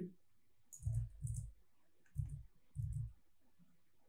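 Four short clicks from keys or buttons being pressed at a computer, each with a dull knock: two about a second in, then two more past the two-second mark.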